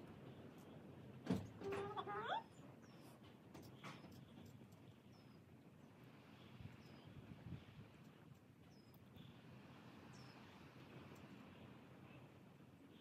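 One short bleat from a newborn calf, about two seconds in, while it is being tube-fed. Small birds chirp faintly now and then.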